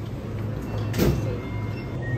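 Automatic glass sliding door of a convenience store opening, with a sharp knock about a second in, over a steady low hum.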